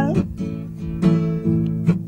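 Acoustic guitar being strummed, its chords ringing between sung lines, with a fresh strum about once a second.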